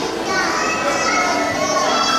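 High-pitched children's voices calling out and chattering in a large, echoing hall.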